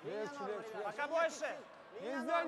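A man's voice calling out in short phrases on the ice, a curler's calls to the sweepers as the stone is swept.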